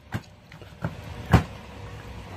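Handling noise as plush toys are moved about close to the microphone: a low rumble with three soft thumps, the loudest about a second and a half in.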